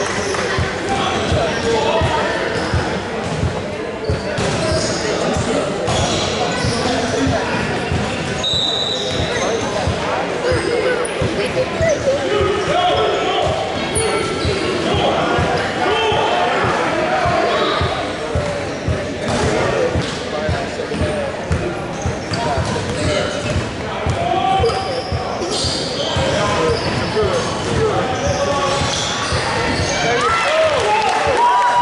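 A basketball bouncing on a hardwood gym floor, with repeated thuds, amid the chatter of many voices echoing in a large gymnasium.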